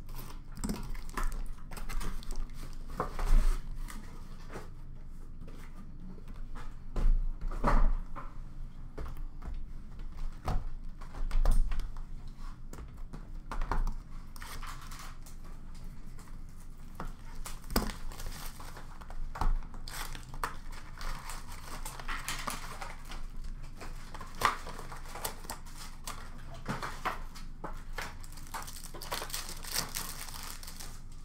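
Cardboard hockey-card boxes and foil packs being handled and opened: irregular knocks and scrapes of cardboard in the first half, then crinkling and tearing of pack wrappers later on.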